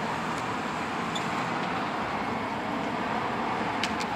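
Steady road traffic and vehicle engine noise, with a pickup truck pulling away.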